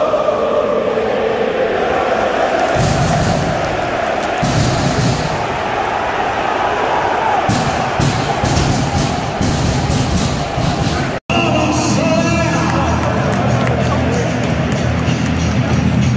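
Music over a stadium PA with a large crowd singing along and cheering, filling a packed football stadium. The sound drops out for a moment about 11 seconds in.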